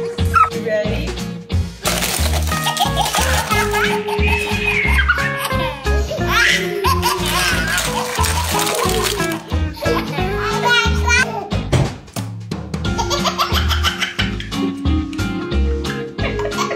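Background music with a steady beat, with babies laughing and young children's voices over it.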